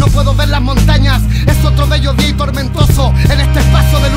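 Hip hop track: rapping over a beat with heavy, sustained bass and regular drum hits.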